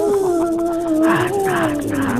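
Cartoon monster growl effect for a serpent creature: one long, slowly falling drawn-out growl, with two short hisses a little after a second in.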